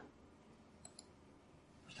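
Near silence with two faint, short clicks close together a little under a second in.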